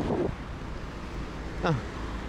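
Road traffic on a wide city avenue: the hiss of a passing car fades in the first moment, leaving a steady low traffic rumble mixed with wind on the microphone.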